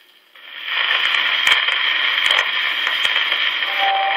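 Sonora acoustic phonograph's needle running in the lead-in groove of a 1918 Columbia 78 rpm record: a steady surface hiss that swells up within the first second after the needle is set down, with a few scattered clicks and pops, just before the music begins.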